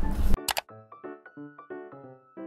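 A loud rough handling rustle cuts off abruptly, then a single camera-shutter click, then light background music of short plucked keyboard notes, about three to four a second, over one held high tone.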